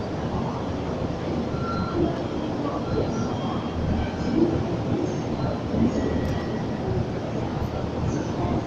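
Meitetsu 3150 series electric railcars rolling along the track as they are towed in delivery, with a steady rumble of wheels on rail. A few brief, faint squeals come through.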